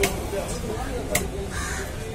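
A heavy fish-cutting knife chopping through a fish into a wooden chopping block: two sharp chops about a second apart, over the chatter of voices.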